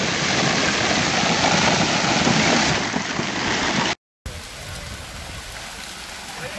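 Heavy hailstorm: a dense, loud, even clatter of hailstones pelting down. It stops dead about four seconds in and picks up again noticeably quieter.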